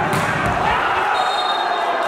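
A volleyball being struck hard once near the start, over the voices and shouting of a crowd echoing in an indoor sports hall.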